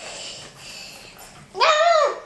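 A baby's high-pitched babbling squeal, its pitch swooping up and down, starts about one and a half seconds in after a quieter moment.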